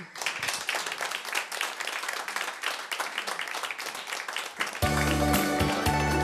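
A small audience clapping; about five seconds in, music starts with strong bass notes.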